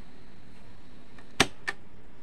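Two sharp clicks about a third of a second apart, the first louder, over a steady low hiss.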